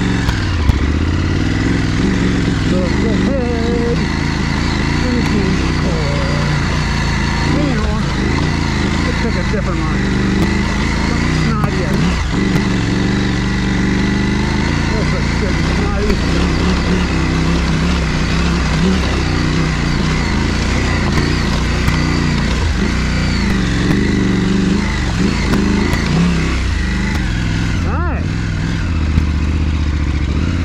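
Adventure motorcycle engine climbing a rocky trail, its revs rising and falling with the throttle, with a few sharp knocks as the tyres hit loose rock.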